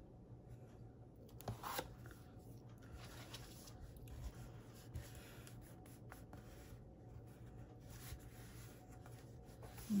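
Faint rustling and rubbing of paper being folded over the edge of a chipboard cover and pressed down by fingertips, with a few soft ticks, over a low steady hum.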